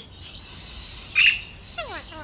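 Alexandrine parakeet giving one short, loud, harsh call about a second in.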